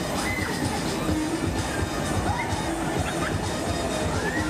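Loud music with a steady heavy beat from the sound system of a Polyp (octopus) fairground ride in motion, over a low rumble, with short high rising-and-falling squeals scattered through it.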